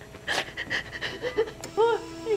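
A woman sobbing: sharp, breathy gasps, then short broken cries that rise and fall in pitch near the end.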